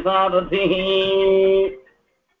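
A man chanting a Sanskrit verse in a melodic recitation, drawing out one long held note before stopping abruptly near the end.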